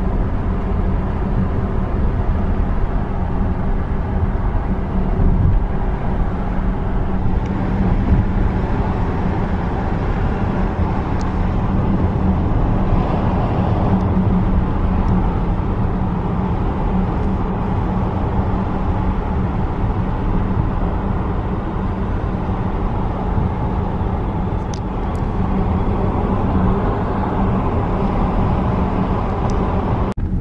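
Car driving at steady speed, heard from inside the cabin: a continuous low rumble of road and engine noise.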